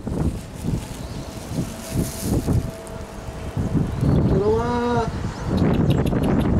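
Wind rumbling on the microphone, then about four seconds in a man's long, sing-song call that rises and then holds, calling a kestrel in to eat.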